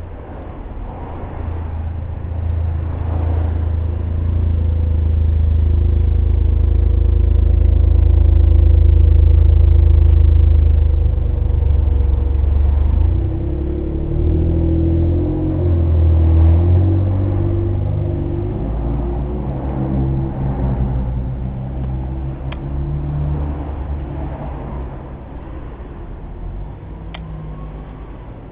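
A tuk-tuk's small engine running close by, a low rumble that builds over the first ten seconds, changes pitch for a few seconds in the middle as if lightly revved, then fades toward the end.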